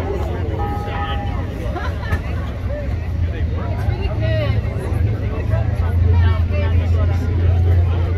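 Crowd chatter with unclear voices over a steady low rumble, which grows louder in the last two seconds. A short, thin beep-like tone sounds about a second in.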